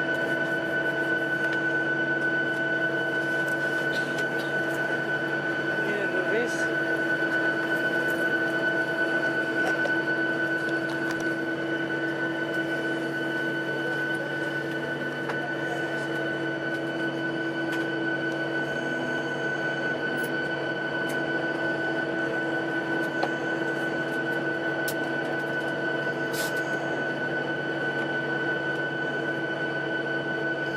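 Steady mechanical drone with a constant high whine, heard from inside an airliner's cabin while a de-icing truck sprays fluid over the wing.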